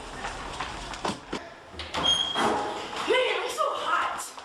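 Children running on a hard floor, with sharp footfalls and knocks, then girls' voices calling out over the second half.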